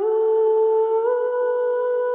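Background music: a single sustained note with a humming quality, rising slightly and stepping up in pitch about a second in, then held steady.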